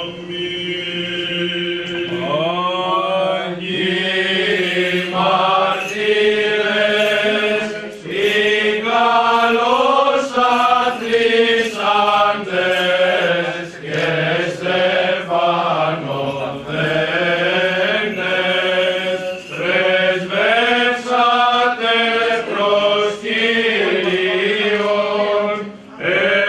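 Greek Orthodox Byzantine chant: a melismatic melody sung in phrases over a steady held drone (ison).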